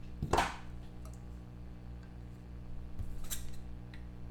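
Trading cards being handled: a short sliding swish about a third of a second in and a fainter one near three seconds, over a steady low hum.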